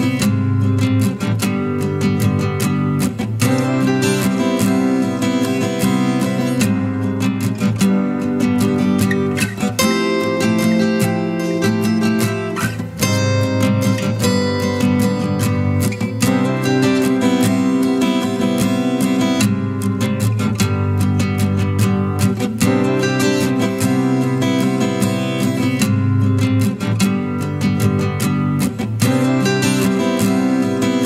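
Background music of strummed acoustic guitar, playing steadily throughout.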